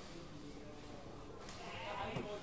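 Indistinct background chatter of a crowd, with one louder, higher voice coming in near the end.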